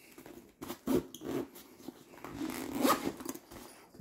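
Zipper of a fabric hockey-mask bag being pulled open in a few irregular rasping strokes, the longest near the end, with some rustling of the bag.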